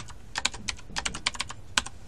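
Computer keyboard typing: a quick, irregular run of keystrokes as a word is typed.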